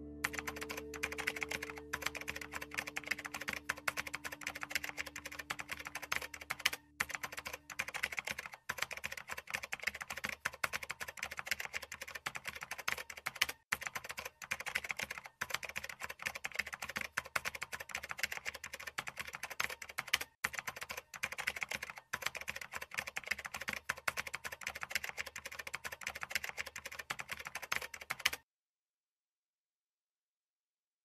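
Typing sound effect: a fast, continuous run of key clicks with a few brief pauses, stopping abruptly about two seconds before the end. Held guitar notes from the score die away under the clicks during the first several seconds.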